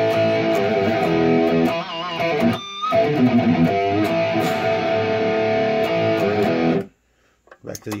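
Electric guitar played through a Line 6 Pod Go's Placater Dirty amp model, set to mid-to-high gain: sustained chords ringing, with a short break a little under three seconds in. The playing cuts off sharply about seven seconds in.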